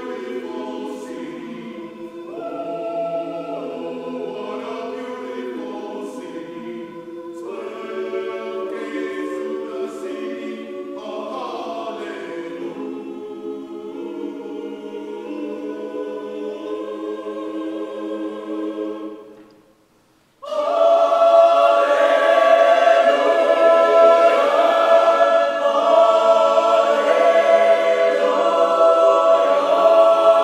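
Mixed choir singing sustained chords. About two-thirds of the way through it breaks off into a moment of silence, then comes back in noticeably louder.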